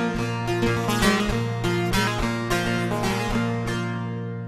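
Bağlama (long-necked Turkish saz) played without voice as the folk song closes: a run of plucked melody notes over ringing drone strings. The sound eases off near the end as the last notes ring out.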